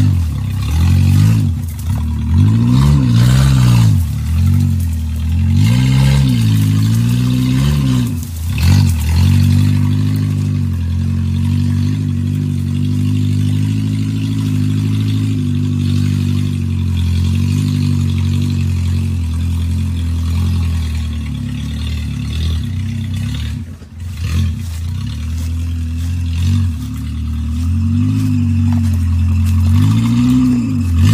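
An off-road 4x4's engine revving up and down repeatedly as it crawls through brush, then holding a steady note. The engine drops away briefly about three-quarters through and revs again near the end.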